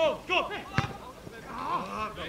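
Footballers' shouting voices on the pitch, with one sharp thud of the football being struck a little under a second in.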